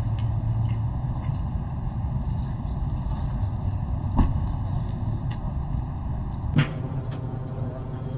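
Outdoor ambience dominated by a steady low rumble, with two sharp clicks, one about four seconds in and another about two seconds later.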